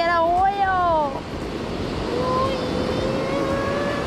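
Surf and wind on the microphone, with a person's long drawn-out vocal call. The call wavers and falls in pitch in the first second, and a second held, slowly rising note runs through the second half.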